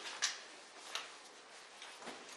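Sharp clicks: a loud one about a quarter second in and another about 0.7 s later, with a fainter one near the end.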